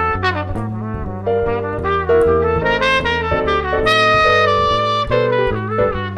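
Jazz trumpet soloing over piano chords and a walking bass line. The trumpet carries a moving melody with a longer held note near the middle.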